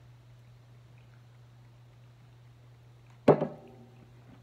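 Quiet with a steady low hum, then about three seconds in a sharp clunk with brief ringing as an aluminium soda can is set down on a table.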